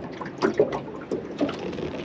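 Irregular light knocks and clicks of gear being handled on the deck of a small fishing boat, with a little water sound.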